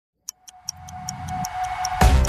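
Clock-style ticking, about five ticks a second, over a swelling low drone and a steady high tone that grow louder: the build-up of a news programme's intro sting.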